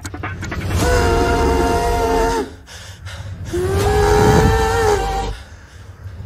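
Kazoo playing two long held notes with a pause of about a second between them, over a low rumble.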